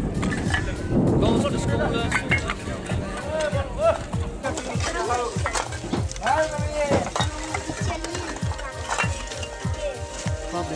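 People's voices talking and calling, mixed with many short knocks and clicks and a steady low drone underneath.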